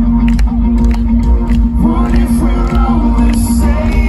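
Live amplified band performance heard from within the crowd: loud music with heavy bass and a steady held low note, a singer's voice coming in about two seconds in, with crowd noise mixed in.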